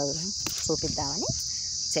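Insects singing in a steady, high-pitched chorus that never breaks.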